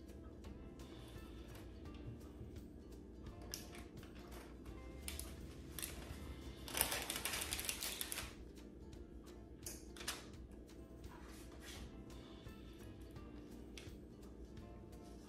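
Soft background music under small taps and clicks of hands working crumbly streusel topping onto cookie dough on a parchment-lined baking sheet, with a louder rustle for about a second midway.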